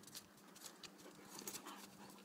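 Faint scuffling and short clicks from two Irish Wolfhounds play-wrestling, over a faint steady hum.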